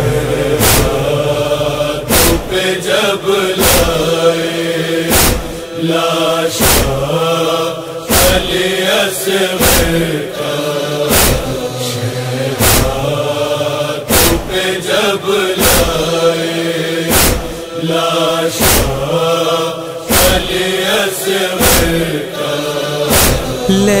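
Wordless interlude of a noha: voices chanting a wavering, sustained melodic line over sharp percussive beats, about one every three-quarters of a second, in the style of matam chest-beating.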